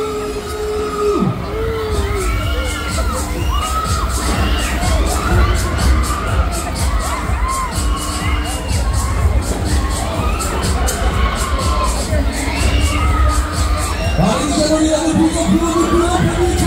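Riders on a swinging Sky Master pendulum fairground ride screaming and shrieking again and again, over loud fairground music with a steady low beat.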